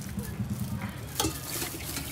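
Steel ladle scooping chickpea curry from a large steel pot and pouring it into a plastic bag, with one sharp metal clink about a second in.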